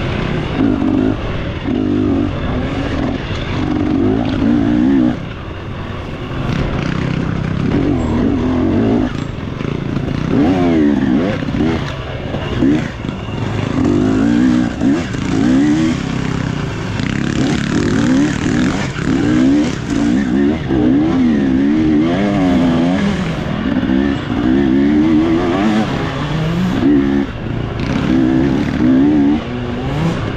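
Off-road dirt bike engine under constant throttle changes, its pitch rising and falling in quick, repeated revs as the rider accelerates and backs off along the trail.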